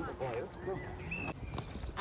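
Several people talking in the background, with a few light footsteps on a path.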